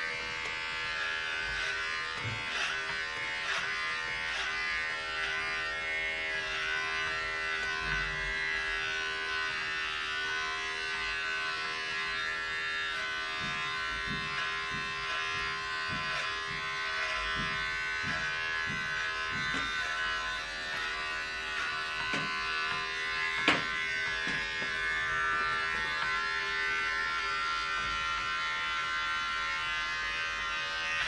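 Corded electric hair clipper running with a steady buzz while cutting hair at the back of the head, with a run of faint strokes midway as it passes through the hair. A single sharp click, the loudest moment, comes about two-thirds of the way through.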